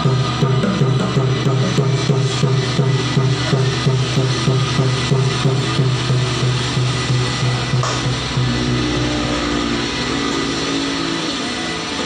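Bongo drums hand-played in a steady, even rhythm over accompanying music with sustained low notes. The drumming stops about eight seconds in while the music carries on with held chords.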